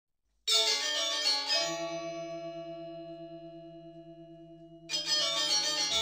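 Bell-like chime tones of an intro jingle: struck about half a second in and again a second later, ringing and slowly fading, with a fresh strike near the end.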